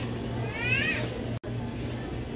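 A brief high-pitched squeal rising in pitch about half a second in, over a steady low store hum; all sound drops out for an instant just after the middle.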